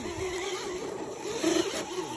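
Small electric motor and gearbox of a radio-controlled scale rock crawler whining as it crawls over dirt, the pitch rising and falling with the throttle.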